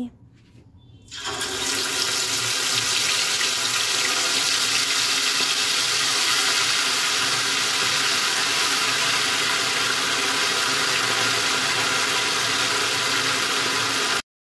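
Marinated chicken pieces deep-frying in hot mustard oil in a steel kadhai: a loud, steady sizzle that starts about a second in, as the pieces go into the oil.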